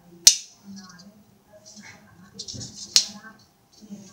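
Two sharp taps on an antique brass sieve, about three seconds apart, each with a brief metallic ring.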